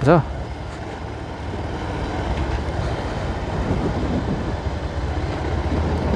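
Outdoor street ambience: a steady low rumble with faint distant voices.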